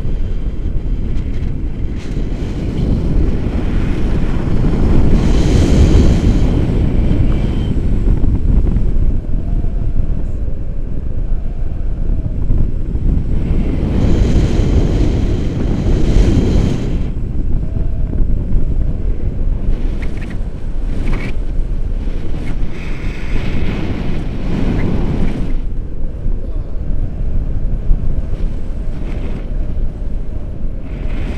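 Wind buffeting an action camera's microphone during a tandem paraglider flight: a loud, steady low rumble that swells in gusts about five seconds in, around fifteen seconds and again near twenty-four seconds.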